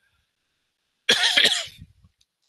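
A man coughs once, a sudden burst about a second in that fades within a second.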